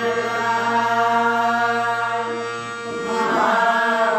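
Devotional bhajan with harmonium accompaniment: harmonium and voices hold one long steady note for about three seconds, then the melody moves on near the end.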